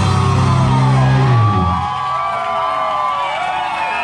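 Live rock band holding a loud, low chord that breaks off about one and a half seconds in. The crowd whoops and shouts in the gap that follows, over a few lingering higher tones.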